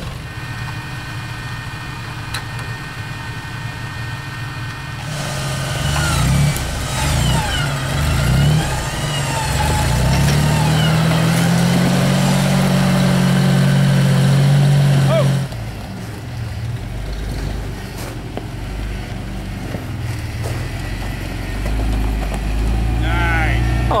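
Flat-fender Willys-style jeep's engine revving hard under load for about ten seconds as it climbs through snow and ruts, its pitch rising slowly, then dropping off suddenly. A lower, steady engine rumble follows.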